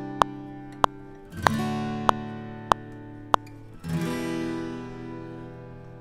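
Dry, unprocessed playback of a recorded acoustic guitar, double-tracked and panned left and right. Three strummed chords ring out and fade, with new strums about a second and a half in and about four seconds in. Sharp ticks fall on the beat through the first half.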